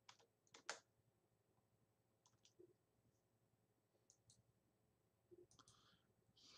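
Faint computer keyboard keystrokes, a few clicks at a time in short pairs and runs, from typing a line of text, over near silence.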